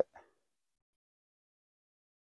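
Near silence: the last trace of a spoken word in the first instant, then nothing at all.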